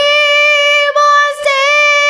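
A girl singing long held notes of an Odissi devotional-style song, her voice sliding slightly up in pitch near the middle, with harmonium accompaniment underneath.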